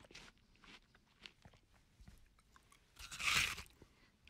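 A dachshund biting and chewing at a hot dog held on a fork: small scattered mouth clicks, then a louder crunching bite a little after three seconds in.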